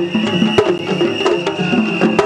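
Japanese festival music (matsuri bayashi) played in the street: sharp drum and wood strikes over short, stepping lower notes, with a long high note held above them.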